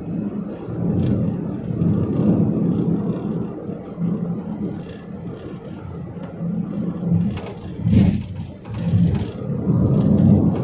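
Wind buffeting the microphone together with the running noise of a moving road vehicle, a low rumble that rises and falls in gusts, with a sharp louder gust about eight seconds in.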